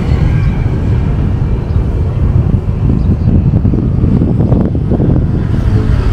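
Wind buffeting the microphone: a loud, low rumble that keeps rising and falling unevenly.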